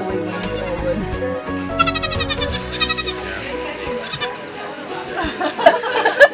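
A Nigerian dwarf goat kid bleating in short calls, about two, three and four seconds in, over steady background music.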